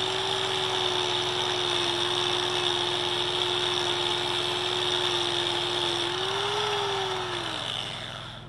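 Electric angle grinder with a twisted-wire cup brush running at full speed with a steady whine and a hiss of wire on steel. The pitch lifts briefly near the end, then the motor winds down as it is switched off.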